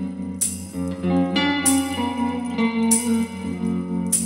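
Electric guitar playing a slow run of sustained notes, with a tambourine struck on a slow beat about once every second and a quarter, its jingles ringing over the guitar.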